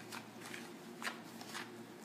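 Quiet room tone with a few faint, soft handling noises, the clearest about a second in.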